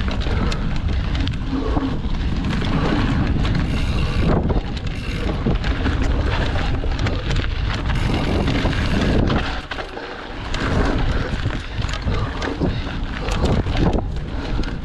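Wind rushing over the microphone of a mountain bike ridden fast on a dirt and leaf-covered trail, with the tyres rolling over the ground and frequent rattles and knocks from the bike over bumps. The noise eases briefly about ten seconds in.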